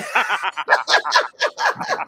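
A woman and a man laughing together, in a quick run of short ha-ha bursts.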